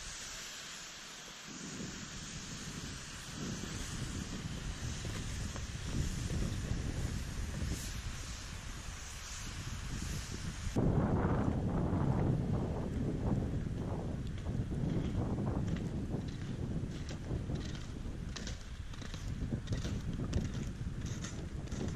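Wind buffeting the microphone as a steady low rumble. It turns heavier after a sudden change about eleven seconds in, with short scraping sounds near the end.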